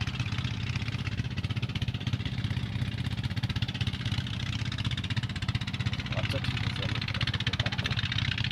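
A small engine running steadily with a fast, even chugging beat.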